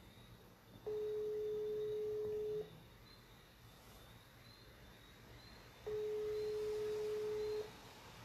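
Telephone ringback tone of an outgoing call that goes unanswered: a steady single-pitch tone sounding twice, each ring lasting nearly two seconds with about three seconds between them.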